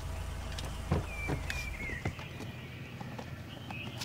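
A parked SUV's engine idling as a low rumble that drops away about two seconds in, with a single sharp click about a second in as the rear door is unlatched.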